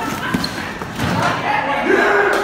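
A homemade cardboard car with cardboard-disc wheels tumbling and bumping on a concrete floor at the end of its run down a ramp, with the group's excited shouts over it.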